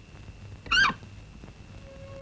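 A single short, high-pitched squeal whose pitch wavers and falls, a little under a second in, over a faint low hum.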